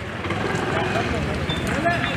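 Indistinct background voices of players and spectators at an outdoor cricket ground, with a single sharp click near the end.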